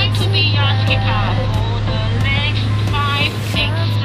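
Steady low hum of an open tour boat's motor, with voices heard over it.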